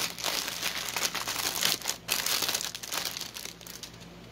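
Clear plastic kit bag crinkling as it is handled and the embroidery floss skeins are pulled out of it: a run of irregular crackles that thins out near the end.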